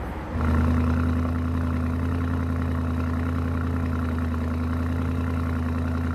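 A vehicle engine running steadily at an even speed: a low, unchanging tone that starts about half a second in.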